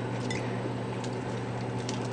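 Steady low hum with faint background hiss in a small room, and a faint light click near the end.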